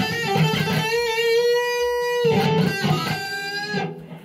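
Electric guitar played with pinched (artificial) harmonics, picked just past the pickup where the harmonic sounds best. A few short notes lead into one high harmonic held for over a second, followed by more notes that fade out near the end.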